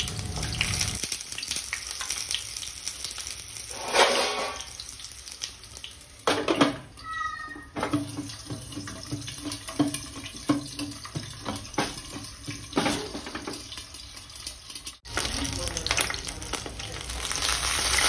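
Whole pointed gourds (parwal) sizzling as they fry in hot oil in a kadhai, with a steady hiss broken by a few knocks of the pan and its glass lid.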